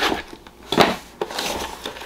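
Cardboard subscription box being handled and slid on a table: several short scrapes and knocks, the loudest a little under a second in.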